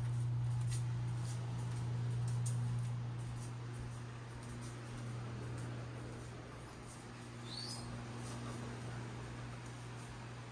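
A steady low hum, loudest in the first three seconds, with faint ticks scattered through it and one brief high squeak rising in pitch about seven and a half seconds in.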